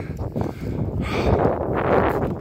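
Wind buffeting the phone's microphone: a rough, uneven rumble that swells about a second in.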